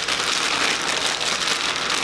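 Thin plastic bag crinkling and rustling continuously as cracked hard-boiled eggs are rolled around inside it in water dyed with black food colouring.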